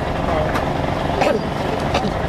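A steady low rumble, like a running motor, under faint background voices, with two short clicks about half a second and just over a second in.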